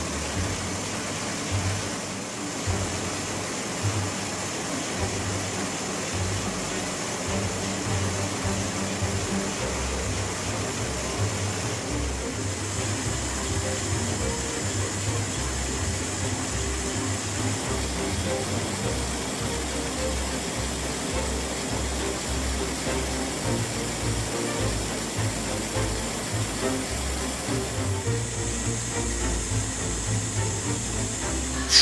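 The 1917 MAN F6V35 submarine diesel engine running, a steady mechanical clatter and hiss with rhythmic low thudding underneath.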